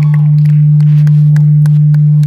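A loud, steady low hum holding one pitch, with faint crowd whoops above it.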